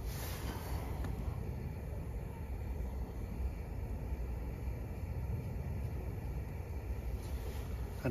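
Jetboil Zip gas burner running steadily under its pot, turned up to full flame. A brief rustle in the first second.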